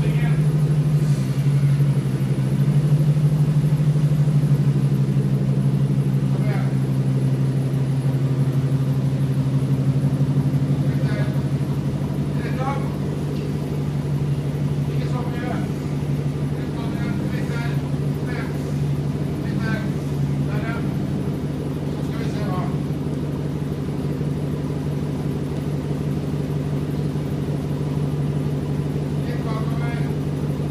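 A 2007 Ford Mustang Cervini C-300's engine idling with a steady hum, a little louder for the first ten seconds or so and then settling to an even level.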